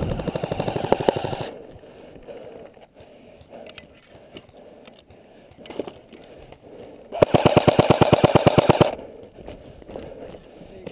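Airsoft gun firing two rapid full-auto bursts, one right at the start and a louder one near the end, each lasting about a second and a half.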